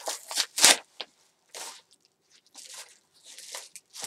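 Packaging being handled and torn open by hand: a run of short, irregular crackly noises, the loudest about half a second in.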